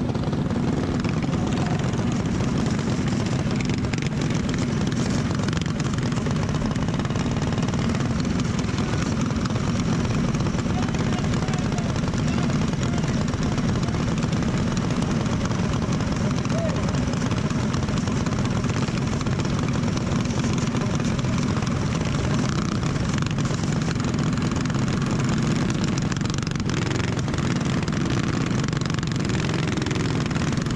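Racing go-kart's single-cylinder Predator 212 engine running at steady low revs, unbroken and at an even level, during a yellow-flag caution.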